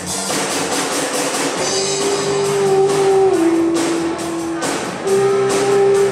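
Live rock band playing an instrumental passage: electric guitar holding long notes that step down in pitch, over bass guitar and a steady drum-kit beat.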